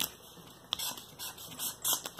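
A marker drawing on a paper airplane: faint, irregular scratching strokes of the tip on paper, with a small click a little under a second in.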